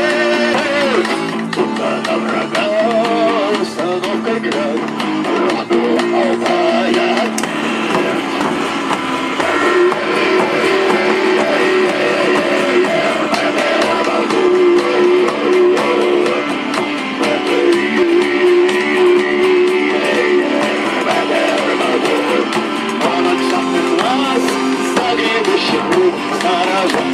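Live shamanic-rock band playing a song: electric guitar, accordion, frame drum and hand drum together, loud and continuous.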